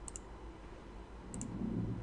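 Computer mouse button clicked twice, about a second and a half apart, each a quick double tick of press and release, placing points on a curve. A faint low murmur near the end.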